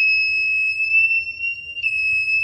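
Bench DC power supply's short-circuit alarm sounding a steady, high-pitched continuous beep, with a momentary break near the end. Its output has collapsed to zero on an iPhone 8 motherboard, the sign of a large leakage current or short circuit on the board's main battery-voltage supply line.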